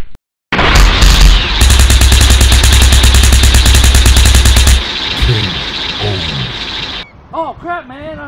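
A loud, deep rumble carrying a rapid run of sharp, gunfire-like blasts for about three seconds. It dies away about seven seconds in.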